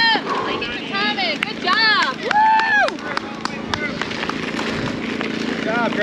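Spectators shouting encouragement in high-pitched calls for the first three seconds, over the crunch and ticking of a mountain bike's tyres rolling on gravel.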